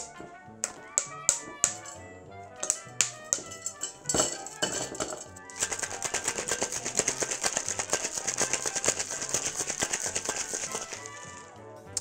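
Ice dropped into a metal cocktail shaker tin, a large cube and cracked ice going in with a string of sharp clinks and knocks. About five and a half seconds in, the two-tin shaker is shaken hard for about six seconds, the ice rattling rapidly against the metal, and it stops just before the end. Background music plays underneath.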